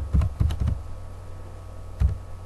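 Computer keyboard typing: a quick run of about five keystrokes in the first second, then a pause with only a low steady hum.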